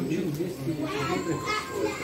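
Several people talking at once, with a child's voice among them.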